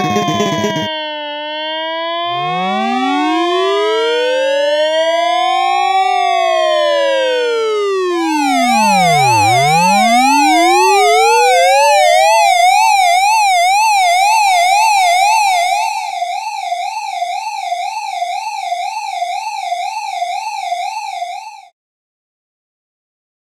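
Several emergency vehicle sirens sounding at once: slow wails rising and falling over one another, then a fast up-and-down yelp that takes over about eight seconds in and cuts off suddenly near the end.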